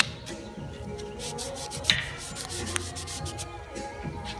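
Cloth rag rubbing and wiping over a steel barbell sleeve and shaft, cleaning off excess grease, with sharp clicks at the start and about two seconds in.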